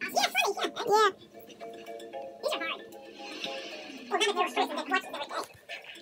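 A television game show playing: voices over show music, with held musical tones in the middle stretch.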